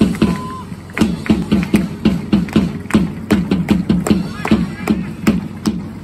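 Supporters' drums beating a steady, repeating rhythm with hand clapping and voices chanting along.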